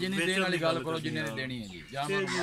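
Men talking, a continuous conversation in Punjabi.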